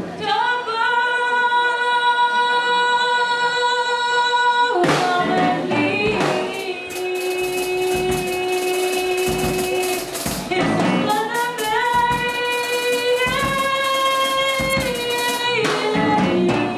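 A woman singing live into a microphone, holding three long notes in turn, the middle one lower than the other two.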